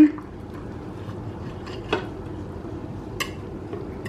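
Knife and server clinking against a serving plate while cutting a portion of baked stuffed squash, with two short clicks, about two seconds in and just after three seconds.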